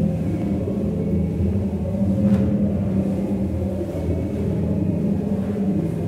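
Loud, steady drone of layered low sine tones with a thin higher tone above them, played through a sound installation's speakers. It sets in suddenly and holds without a break.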